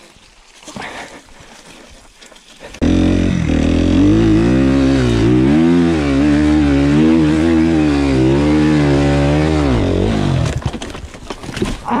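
Suzuki RM-Z 250 motocross bike's single-cylinder four-stroke engine revving hard under load up a steep sandy climb, its pitch rising and falling again and again as the throttle is worked. It comes in suddenly about three seconds in after some faint rustling, and dies away just before a short shout at the end.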